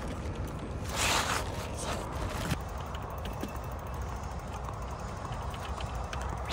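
An e-bike being pushed and dragged along a muddy dirt path, with footsteps: a steady low rumble, a brief louder rush about a second in, and a few light clicks.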